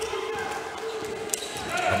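Court ambience of a basketball game in play: a steady faint hum with one brief sharp knock a little past the middle.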